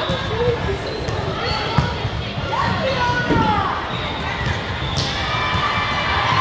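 Volleyball being struck during a rally in a large, echoing sports hall: a few sharp smacks, the sharpest about two seconds in and another near five seconds, over steady chatter and calls from players and spectators.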